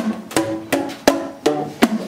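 Tuned plastic percussion tubes (boomwhackers) struck in a steady rhythm, about three hollow, pitched knocks a second, with the note changing from one strike to the next.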